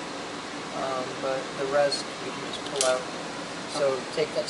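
Indistinct speech in short phrases over a steady background hiss.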